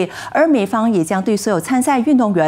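Only speech: a woman reading the news in Mandarin.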